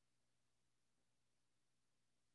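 Near silence: a very faint steady low hum with no other sound.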